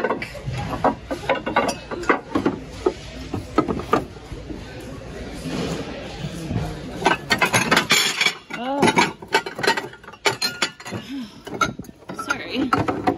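Ceramic plates, mugs and cups clinking and knocking against each other and against a plastic bin as they are rummaged through by hand, many short irregular clinks.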